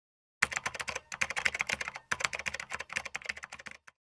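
Rapid typing clicks, keys struck in quick runs with two short breaks, about one and two seconds in, then stopping just before the end.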